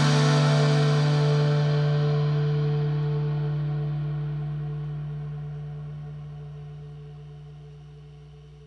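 The band's final chord ringing out and slowly fading away on guitars and bass. The higher tones die first and a low note holds longest.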